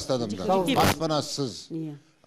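An elderly man speaking into a handheld microphone, with a short sharp hiss a little before the middle.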